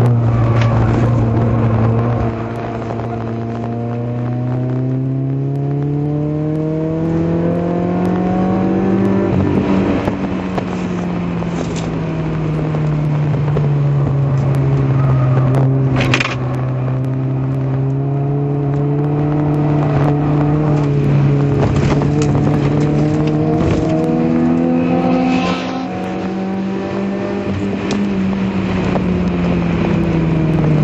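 Citroën Saxo VTS's four-cylinder petrol engine heard from inside the cabin at track speed. The revs climb steadily for several seconds, drop sharply about nine seconds in and then sink, and climb again past twenty seconds before dropping once more. A few sharp knocks come through, the loudest about halfway.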